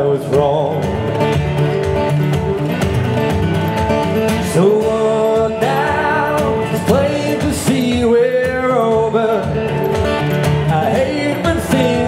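Man singing a country song while strumming an acoustic guitar with steady, regular strokes.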